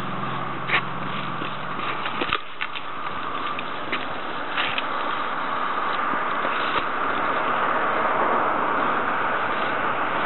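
Steady road traffic noise that grows a little louder toward the end, with a low engine hum for the first couple of seconds. A few short clicks and snaps come from a long-reach pole pruner working in a crepe myrtle's branches.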